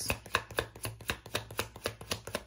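A tarot deck being shuffled by hand: a quick, slightly uneven run of card clicks, about six a second.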